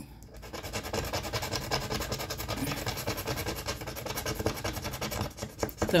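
A silver scratch-off sticker on a paper challenge card being scratched off with a small hand-held tool: fast, continuous back-and-forth scraping, many strokes a second.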